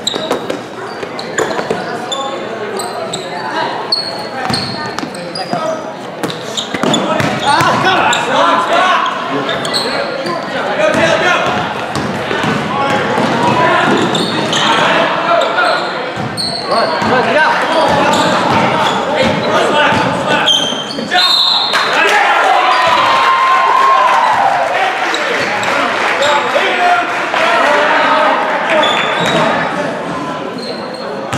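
Basketball game in a gym: a ball bouncing on the hardwood floor, short high sneaker squeaks, and crowd voices and shouts echoing in the hall, growing louder from about seven seconds in.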